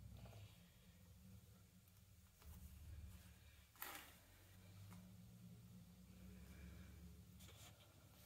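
Near silence: room tone with a low hum, broken by one light tap just before four seconds in as a hand settles a canvas panel on the table.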